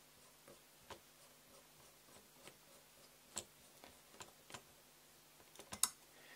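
Faint, scattered clicks and light taps of small M3 bolts being screwed into a carbon-fibre quadcopter frame by hand, with a louder quick cluster of clicks near the end.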